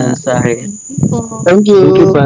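Voices over a video call, several people speaking over one another, with a thin, steady, high-pitched tone running beneath them that cuts off near the end.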